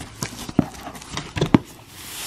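Cardboard box being handled and tipped on carpet: a run of irregular knocks and taps, the loudest about one and a half seconds in.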